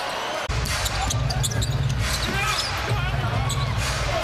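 Basketball arena game sound: crowd murmur and a low hall rumble, with sneakers squeaking on the hardwood court and a basketball being dribbled. The low rumble comes in suddenly about half a second in, at an edit.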